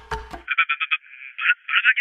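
The last beats of a percussive music cue, then a thin, tinny sound effect from about half a second in: quick rapid pulses that turn into a wavering warble.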